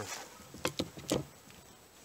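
Wooden 2x4 boards knocking against each other and the wooden tabletop as they are handled and shifted, a few light knocks around the middle.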